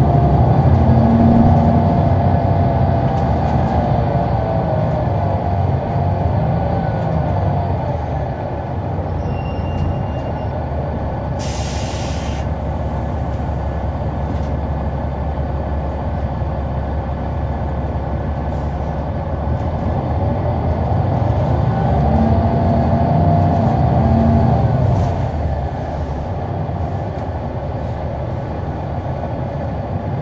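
Caterpillar C-9 ACERT diesel engine of a 2004 Neoplan AN459 articulated transit bus, heard from on board, running under load with a low rumble. Its note rises and falls as the bus accelerates and shifts, with the loudest pulls in the first two seconds and again about 22 to 25 seconds in. About twelve seconds in there is a hiss of air lasting about a second.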